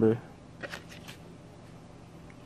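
Paint marker's card-backed plastic blister pack being handled: a few faint crinkles and clicks just under a second in.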